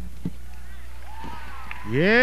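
Performance music cut off, leaving a steady low hum with a single click shortly after. A faint voice follows, then near the end a louder voice call that rises and falls in pitch.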